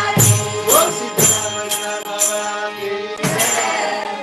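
A group singing a devotional bhajan with a jingling hand percussion instrument struck about twice a second, heard over a video call.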